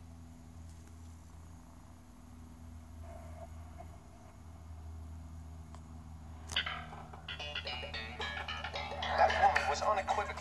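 A DVD's soundtrack played through a small monitor's built-in speakers, with a low steady hum underneath. The opening logo music has faded out; about six and a half seconds in, a click is followed by the disc menu's voices and music.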